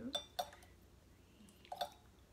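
A tablespoon clinking lightly against a container while red wine vinegar is spooned in: a few short clinks, two near the start and one more near the end, between counted spoonfuls.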